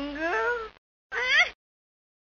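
A character's wordless, high vocal sound: a drawn-out sound rising in pitch, then after a short break a second, briefer one rising sharply.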